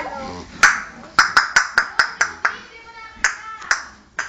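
A run of sharp, sudden knocks, about ten in three seconds, several coming in quick succession in the middle.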